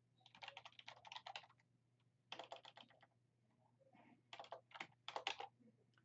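Computer keyboard typing: three quick runs of keystrokes with short pauses between, as a command is typed.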